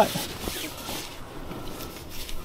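Faint rustling of a fabric dog seat cover being handled, with a few light taps.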